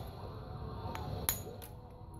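Copper-tipped punch detaching a small flake from the edge of a knapped stone pommel: a sharp click just after halfway, then a fainter tick.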